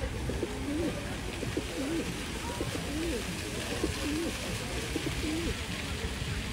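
Feral pigeons cooing close by: a run of low, rolling coos repeated about every half second, over steady background noise.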